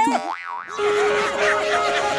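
A short wobbling cartoon boing sound effect, then background music with a steady beat comes in under a second in.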